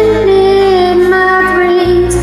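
A woman sings along with a karaoke backing track, holding one long note over a steady bass accompaniment.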